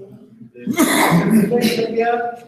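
A loud, breathy vocal burst from a person starting about half a second in, running into speech near the end.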